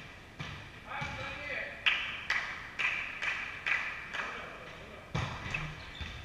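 A volleyball bouncing over and over on a wooden gym floor, about two bounces a second, each knock echoing through the hall. Indistinct players' voices are heard underneath.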